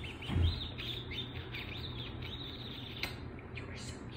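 Pit bull mix puppy whining in a run of short, high squeaks, several a second, at being teased. There is one low thump about half a second in.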